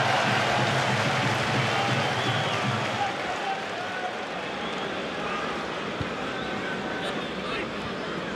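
Football stadium crowd noise: a steady hubbub of many spectators' voices with no single speaker standing out, easing a little about three seconds in.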